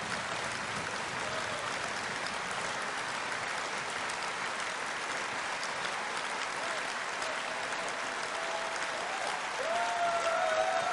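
A large audience in a packed hall applauding steadily. A few wavering voices call out over the clapping near the end.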